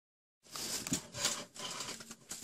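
Rustling and handling noise close to the microphone, starting about half a second in and coming in uneven bursts, like fabric brushing against it.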